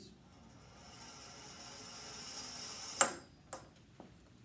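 A ball rolling down a long metal ramp, the rolling noise growing steadily louder for about three seconds. It then strikes the stop at the bottom of the ramp with a sharp, ringing metallic clack, and gives a smaller knock half a second later.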